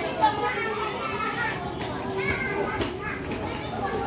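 Children's voices and chatter from several people at once, many overlapping voices with none standing out clearly.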